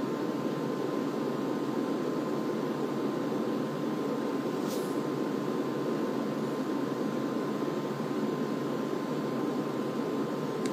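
Steady background room noise, an even low hiss with a faint steady tone running through it, and one faint brief tick about five seconds in.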